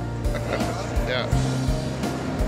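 Background music with a steady, quick beat, with a voice saying "yeah" briefly about a second in.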